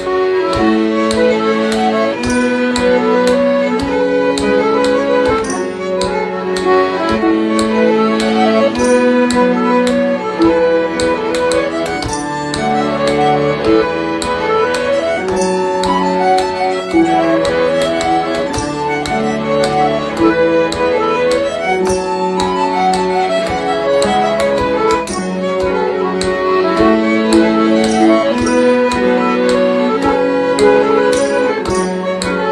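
A traditional-style folk tune played by an ensemble of harp, bodhrán, piano accordion, fiddle and cello. The bodhrán keeps a steady beat under the accordion and fiddle melody, with the cello holding the long low notes.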